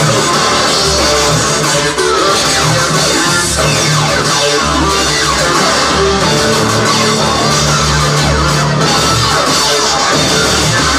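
Industrial rock band playing live and loud: bass guitar and drum kit with guitar and electronics in a dense, unbroken wall of sound, the bass line moving underneath.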